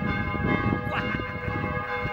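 Church bells of the Szeged Votive Church ringing, several bell tones held and overlapping, over a low background rumble.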